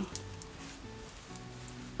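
Soft background music of slow, held notes, with faint rustling of the velvet and satin as the clutch is folded.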